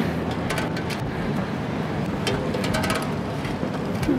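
A moving bicycle heard from a camera fixed to its front basket: a steady rushing noise with scattered clicks and rattles, clustered about half a second in and again past the middle.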